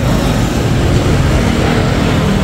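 Small motorbikes and scooters riding past close by, their engines and tyres making a steady noise.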